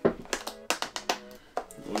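Clear plastic clamshell takeout container clicking and crackling as a hand handles its lid, a quick run of sharp clicks, over soft background music.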